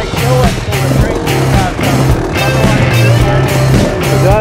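Background rock music with a steady beat and bass line.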